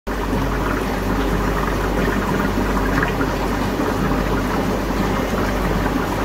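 Steady running and trickling water from aquarium tank filtration, with a low electrical hum underneath.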